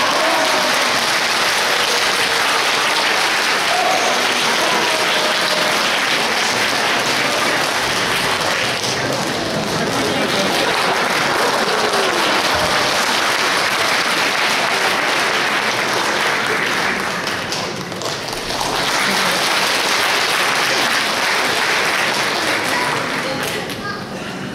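Audience applauding steadily, easing briefly about three quarters of the way through and then picking up again.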